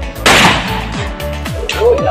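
A single shotgun shot about a quarter second in, its report fading over about half a second, over electronic dance music with a steady beat.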